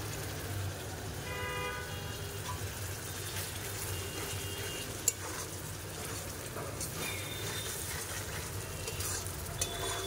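Spice masala with chilli powder frying in oil in a metal wok, stirred and scraped with a spatula: a steady sizzle with stirring scrapes and one sharp tap about five seconds in. The masala is being fried down in oil before any water is added.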